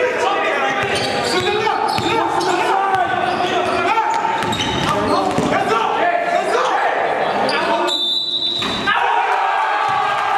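A basketball bouncing on a gym floor during a game, amid players' voices in a large hall. About eight seconds in, the rest of the sound briefly drops away and a short, steady high tone is heard.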